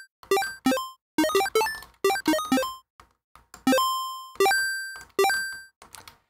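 Square-wave chiptune blip synth patch in FL Studio's Sytrus played as a quick series of short notes, each jumping up in octave steps from a stepped pitch envelope. Toward the end the notes ring longer as the volume envelope's decay is lengthened.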